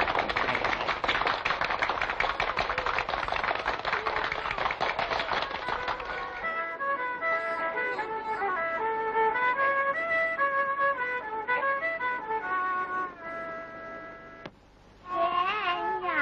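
Old film soundtrack: for the first six seconds a dense clatter like a round of clapping, then an instrument plays a slow melody in steady held notes. Near the end, after a brief pause, a woman starts singing with vibrato.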